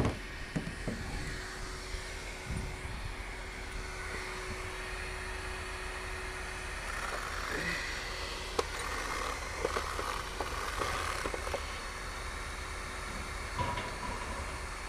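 Steady low rumble of a car idling, with a faint steady whine through the first half and a few light clicks and knocks scattered through.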